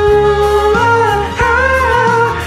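Two male voices singing held notes over a pop backing track, the melody stepping up in pitch twice.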